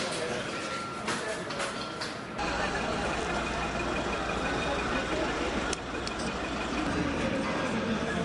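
Background voices over ambient noise. A steady low hum joins suddenly about two and a half seconds in and runs on.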